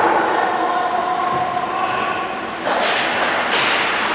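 Ice hockey play in an indoor rink heard from behind the boards: a held tone carries through the first half, then two short, sharp scraping bursts come near the end.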